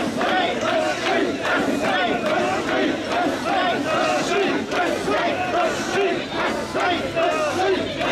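A large crowd of mikoshi bearers chanting "wasshoi" together as they carry the portable shrine. The shouts repeat in a steady rhythm over the general noise of the crowd.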